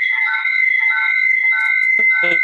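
A steady, high-pitched whistling tone held throughout, with shorter, lower tones coming and going beneath it.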